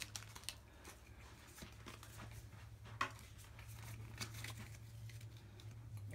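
Faint crinkling and tearing of a foil trading-card booster-pack wrapper being opened, with one sharper crackle about three seconds in.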